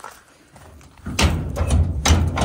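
An old barn door being rattled and pulled as someone struggles to open it: after a quiet first second, a loud clatter of knocks and thuds over a low rumble.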